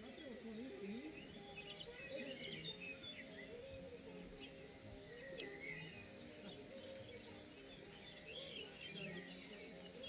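Faint outdoor ambience with small birds chirping and twittering throughout, over a low wavering sound.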